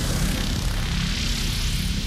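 Logo sound effect: a loud, steady rush of noise with a dense deep rumble underneath, no clear melody.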